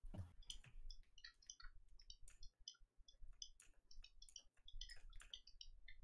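Faint, irregular clicking of a computer input device, several clicks a second, as mesh points are placed one by one in 3D retopology software.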